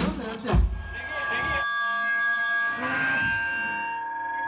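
A hardcore punk band's last hits on drums and bass, which stop abruptly under two seconds in. Steady high-pitched feedback from the amplifiers keeps ringing after them, with a voice heard over it.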